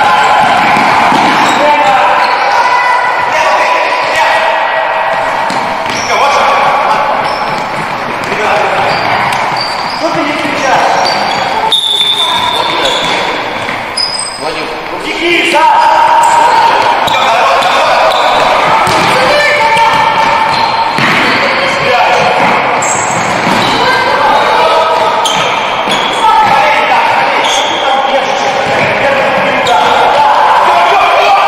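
Live futsal play in a large echoing sports hall: the ball being kicked and bouncing on the hardwood floor, players' shoes squeaking, and voices calling out across the court.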